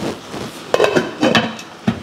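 Glass pot lid with a metal rim being set onto a metal cooking pot: a few clinks and knocks, the sharpest near the end.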